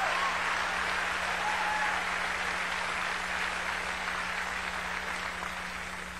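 Large audience applauding, a steady wash of clapping that slowly dies away near the end.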